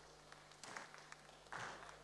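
Quiet room tone in a hall, with a low steady hum, a few faint taps and a brief faint rush of noise near the end.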